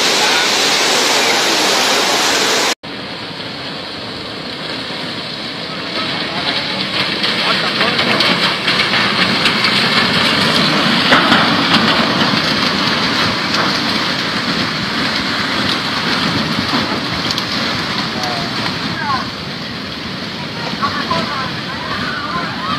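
Rushing roar of a muddy flash flood carrying debris. The audio cuts sharply about three seconds in, then a deeper rush of an approaching flood surge rises in level and stays loud.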